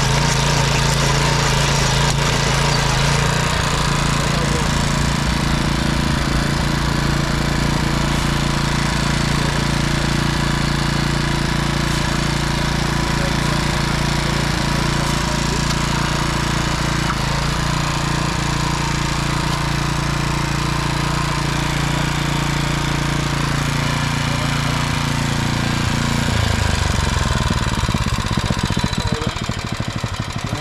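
Yanmar MT3e mini tiller's small engine running steadily under load while its rotating tines churn dry soil. Near the end the engine note drops as it slows toward idle.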